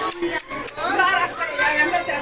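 Only speech: people talking in conversation, with no other sound standing out.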